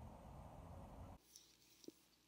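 Faint steady rumble with a light hiss that cuts off just over a second in, leaving near silence with a few faint clicks.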